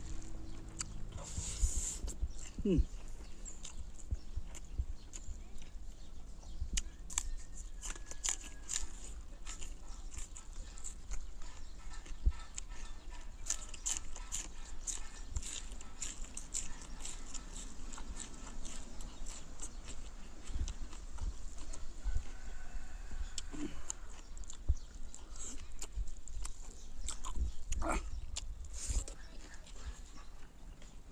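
Close-up mukbang eating sounds: chewing and lip-smacking on chicken curry and rice eaten by hand, as many short, wet clicks that keep on through the stretch.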